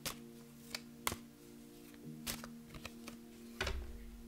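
A deck of divination cards being shuffled and handled: irregular sharp snaps and flicks of the cards, a few each second, with a soft low bump near the end. Quiet background music with sustained held chords runs underneath.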